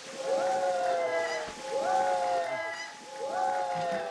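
A person screaming in three long, drawn-out cries as a barrel of cold coloured liquid is dumped over their head, with the liquid splashing underneath.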